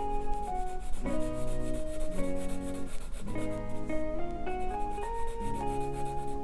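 Felt-tip marker rubbing back and forth on paper in quick repeated strokes as black areas of a drawing are filled in, over gentle background music of held instrumental notes.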